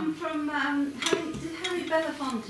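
A woman talking, with a sharp metallic clink about halfway through from belleplates being handled on the table.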